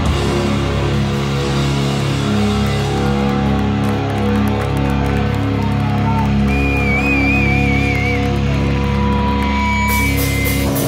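Live crust-punk band playing loud distorted electric guitars and bass on long, ringing held chords. About two-thirds of the way in a high wavering guitar note sounds, and near the end a steady high tone.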